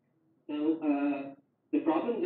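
Speech only: a man talking, in two short phrases after a half-second pause.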